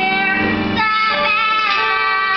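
A girl singing a musical-theatre song solo over instrumental backing, holding long notes.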